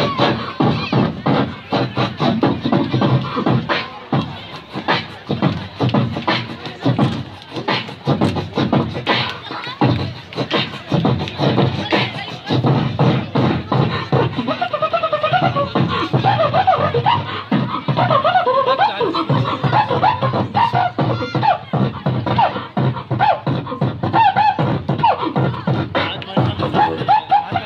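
Beatboxing into a handheld microphone: a fast, steady stream of mouth-made kick and snare hits, with a pitched vocal line woven over the beat from about halfway through.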